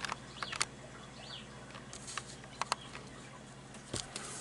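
Paper being handled and creased: scattered sharp crinkles and clicks, several in the first half-second and a couple more between two and three seconds in.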